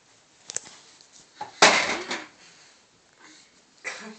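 Small wooden child's chair tipped over onto a carpeted floor, landing with one loud wooden clatter about a second and a half in, after a couple of light wooden knocks.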